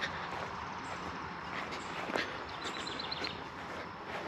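Footsteps on mown grass against quiet outdoor ambience, with a few soft steps and a faint, quick bird trill about three seconds in.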